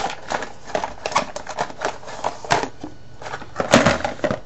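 Small hard objects being handled on a desk: an irregular run of clicks and knocks, with the loudest knock shortly before the end.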